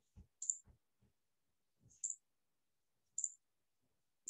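Computer mouse buttons clicking: a few faint, sharp clicks spread over about three seconds, each with a soft low tap under it.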